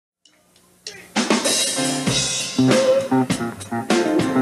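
A live funk-blues band comes in about a second in, led by a drum kit: a cymbal crash, then snare and bass drum hits with cymbals over low bass notes.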